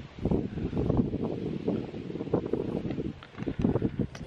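Wind buffeting the microphone: a loud, gusty low rumble that rises and falls unevenly.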